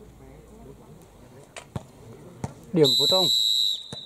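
Volleyball referee's whistle, one steady high blast of about a second near the end, the signal to serve. A few sharp knocks come before it.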